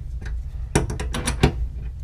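Steel wrench on a threaded gas pipe plug, a quick run of metal clicks about a second in as the plug is worked loose while the fitting above is held with a pipe wrench.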